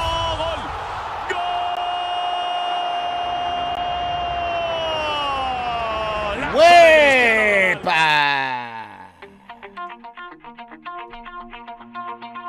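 Spanish-language football TV commentator's long drawn-out goal shout over crowd noise. It holds one pitch for about five seconds, then gets louder and falls in pitch and fades out about eight seconds in. Light background music with short, evenly spaced notes follows.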